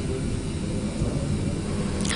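Steady room tone of a lecture hall: a low hum with an even hiss above it.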